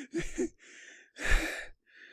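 The tail of a single person's laughter from a laugh track: two last short 'ha' sounds, then a soft breath and a louder breathy sigh about a second in.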